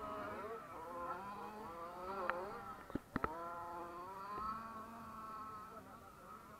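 Radio-controlled off-road car's motor buzzing, its pitch rising and falling as it speeds up and slows around the track. A few sharp knocks come about halfway through.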